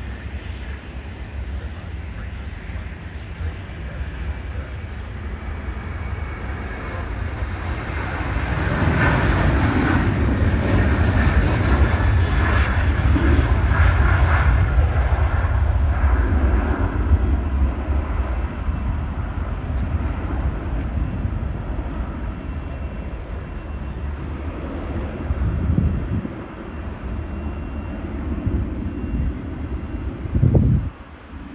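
Jet engines of a Boeing 737-800 airliner at takeoff power, swelling to a loud rush for several seconds as it passes, then slowly fading as it climbs away. Low wind rumble on the microphone underneath, with a few gusts near the end.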